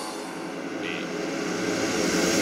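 A quiet transition in a hardstyle mix: a steady droning sound effect that slowly grows louder, with a brief high hiss about a second in.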